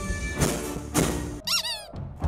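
A folk band playing live on bagpipes, fiddle and drums, cut off about one and a half seconds in. A short high squeak follows, wobbling up and down in pitch.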